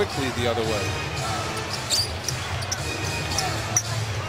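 Basketball arena sound from a game broadcast: a steady crowd murmur with a basketball being dribbled on the hardwood court and a few short, high sneaker squeaks.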